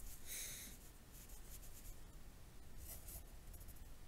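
Pencil writing on lined notebook paper: faint scratchy strokes, the clearest a short one near the start and lighter ones about three seconds in.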